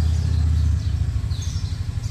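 A low rumble, steady for the first second and then unsteady, with a faint short high chirp about one and a half seconds in.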